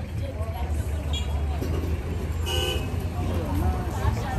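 Street background with a steady low rumble and a short, high vehicle horn toot about two and a half seconds in, with faint voices nearby.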